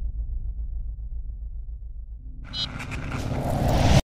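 Sound design of a news channel's logo intro: a low, pulsing rumble, then from a little past halfway a rising whoosh that swells louder and cuts off abruptly.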